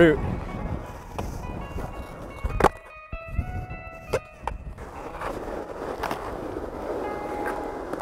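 Skateboard wheels rolling on a hard court surface, with a sharp clack of the board hitting the ground about two and a half seconds in and another about four seconds in.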